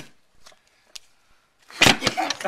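A sharp click at the start and a fainter one about a second in, then a loud, short scuffling burst near the end: hands knocking cards and spoons on a wooden table as players scramble to grab a spoon.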